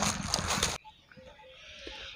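Footsteps crunching on dry fallen leaves, a noisy crackle that cuts off abruptly just under a second in. Faint quiet background follows.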